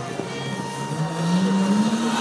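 Nissan Skyline R34 GT-R's twin-turbo straight-six engine heard across a drift pad, its note climbing slowly as the car accelerates through a drift.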